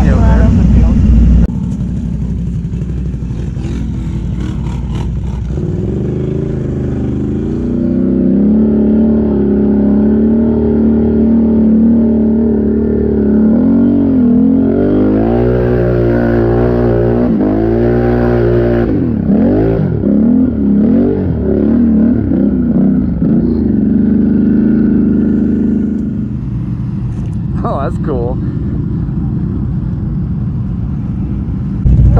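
ATV engine revved hard as the machine churns through a mud hole, its pitch surging up and down again and again through the middle stretch, then settling into a steadier run near the end.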